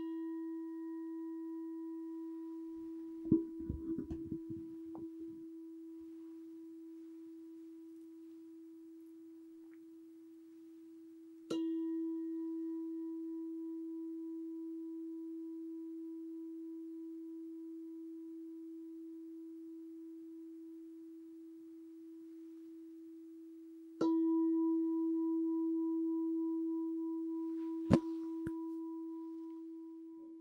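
A singing bowl struck three times, about twelve seconds apart. Each stroke rings as one steady tone that slowly fades, sounding the close of a meditation. There is some rustling a few seconds in and a sharp knock near the end.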